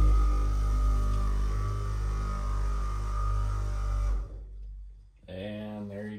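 Saker 12 V cordless buffer polisher running steadily with a foam pad on car paint, a steady hum that stops about four seconds in; its battery is nearly flat. A man's voice follows near the end.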